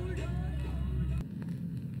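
A northern soul record played on vinyl fades out at its end, with the sung melody dying away. About a second in, the sound drops to a quiet gap with a few faint clicks from the turntable, ahead of the next record.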